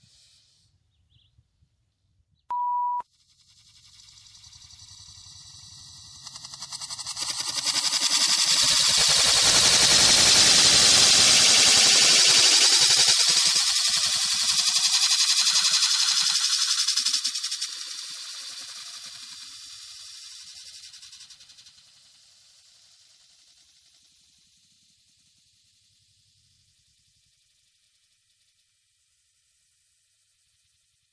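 Burning potassium nitrate and sugar rocket propellant giving a long hissing rush that builds over a few seconds, stays loud for about ten seconds, then slowly dies away. A short beep sounds about three seconds in.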